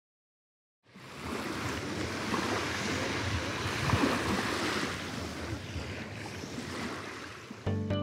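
Sea waves washing onto a shore: a steady rushing that starts about a second in out of silence, swells and then eases. Music starts just before the end.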